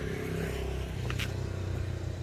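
Motor vehicle engine running nearby, a steady low hum that shifts in pitch about halfway through.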